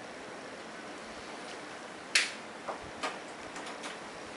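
Faint steady hiss of room noise, broken a little past two seconds in by one short, sharp high-pitched snap and then two fainter ticks.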